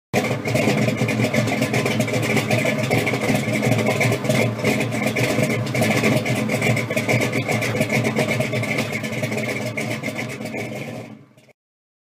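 A car engine running steadily, starting abruptly and fading out near the end before cutting off.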